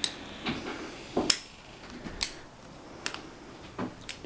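Metal carabiner clicking and clinking as gloved hands work a knotted cord loop onto it: about six separate sharp clicks, irregularly spaced.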